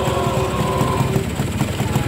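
A motor vehicle engine running steadily nearby, giving a continuous low rumble.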